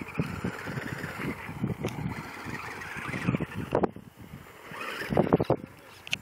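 Team Associated T4 RC stadium truck with a Novak 5.5 Ballistic brushless motor driving on a loose gravel-and-dirt slope: a faint electric motor whine over the crunching and crackling of its tyres on the gravel, with a louder scrabble of tyres about five seconds in.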